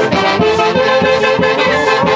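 A live Andean festival band (orquesta típica) of saxophones and trumpets with a bass drum playing dance music: held reed and brass melody lines over a steady, even beat.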